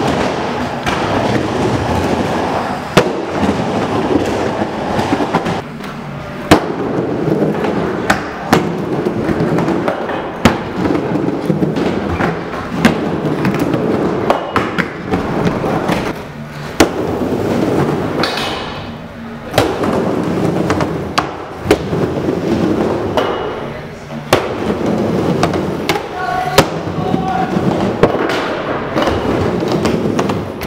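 Skateboard wheels rolling on a wooden bowl and ramps: a steady rumble broken by frequent sharp clacks and thuds as the board strikes the surface, with a few brief lulls.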